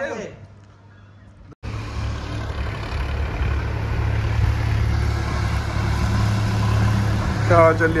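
Farm tractor engine running as it drives past on a wet road: a steady low hum under a continuous hiss. It starts abruptly about a second and a half in.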